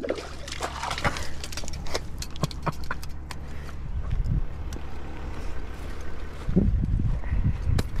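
A hooked panfish being landed on rod and reel: scattered sharp clicks and splashes over a steady low rumble, then louder low thumping as the fish is swung ashore and flops on the grass near the end.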